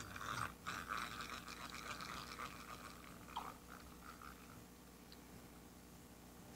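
Fishing reel being cranked to reel in a hooked fish: a faint, fast whirring that fades away over about four seconds.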